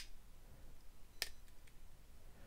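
Two faint clicks a little over a second apart from a Quartermaster QTR-11 TT flipper knife as its blade is flipped open on its external linkage pivot.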